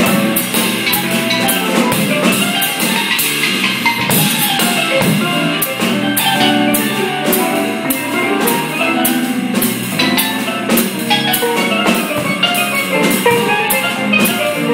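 Live jazz combo playing: a steel pan struck with mallets over bass and a drum kit, with steady, evenly spaced cymbal strokes.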